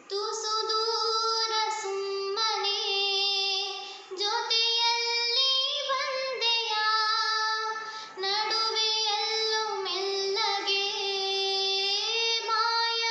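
A girl singing a Kannada song solo, with no instrument heard, in long held phrases. She breaks off briefly about four and eight seconds in.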